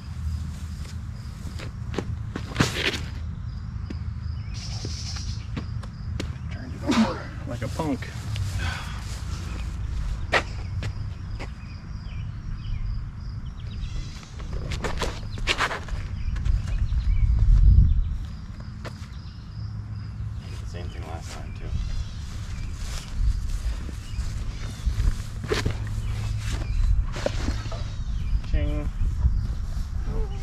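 Steady wind rumble on the microphone outdoors, with footsteps and scattered clicks and knocks from players moving around a concrete tee pad; the rumble swells for a moment about two-thirds of the way through, around a player's run-up and throw. A few words of speech are heard.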